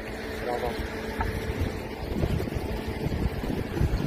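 Wind buffeting the microphone: an irregular low rumble that rises and falls.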